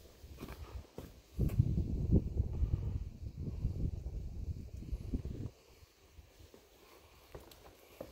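Footsteps on a wooden boardwalk, with a gust of wind buffeting the microphone from about a second and a half in to about five and a half seconds.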